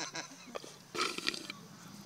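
Men's laughter trailing off quietly, with a short, rough, breathy vocal sound about a second in.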